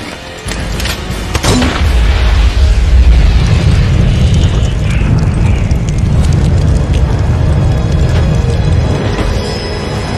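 Film sound effects of a large explosion: a few sharp cracks in the first second and a half, then a deep rumbling blast that swells about two seconds in and rolls on, easing off slightly near the end, with music underneath.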